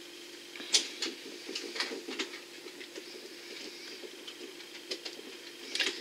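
A scatter of small, sharp clicks and taps, loudest about a second in and again near the end, over a steady low hum.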